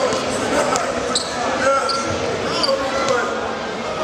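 Basketballs bouncing on a hardwood court, with crowd chatter echoing through a large arena.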